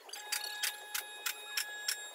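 Steady, clock-like ticking, about three ticks a second, with a faint high ringing tone held behind it.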